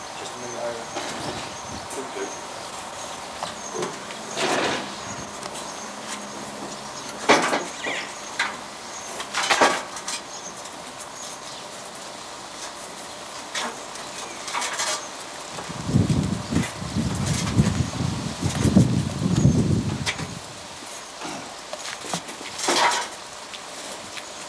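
Scattered knocks and clatters of hands and tools working on the car during engine installation, with a longer rumbling stretch about two-thirds of the way through.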